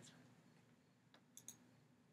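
Near silence broken by faint computer mouse clicks: one a little past a second in, then two close together about a second and a half in.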